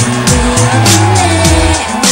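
Live K-pop performance: a girl group singing over a synth-pop backing track with stepped bass notes, gliding synth sounds and a steady drum beat.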